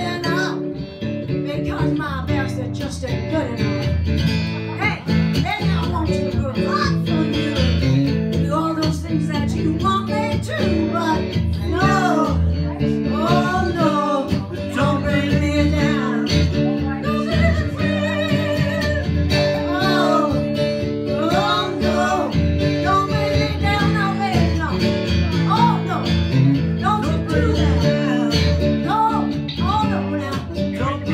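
A strummed acoustic guitar played live, with a woman singing over it into a microphone.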